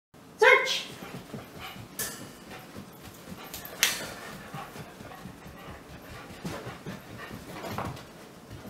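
A dog gives one sharp, high bark about half a second in, then two sharp knocks about two and four seconds in as it searches around a wire exercise pen.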